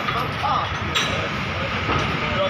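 Steady machinery rumble of a building site, with faint distant voices and a sharp click about a second in.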